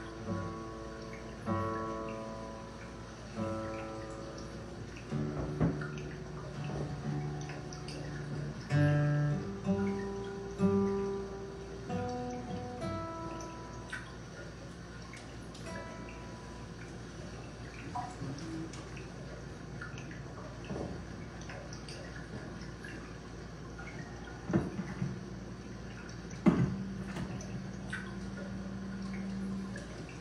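Solo guitar playing slow plucked notes that thin out over the first half, then soft scattered water drips with a single low note held for a few seconds near the end.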